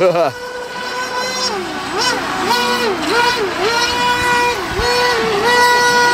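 Small RC jet boat's electric motor whining at a steady high pitch, the pitch dipping and coming back up again and again as the throttle is eased off and opened, over the rush of creek rapids.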